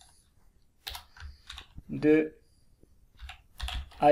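Computer keyboard keys tapped in a few short runs of clicks while code is typed, with a brief vocal sound about halfway through.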